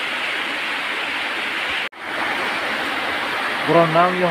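A steady rushing noise, like running water or rain, cuts out abruptly for a split second about two seconds in and then resumes. A man's voice starts near the end.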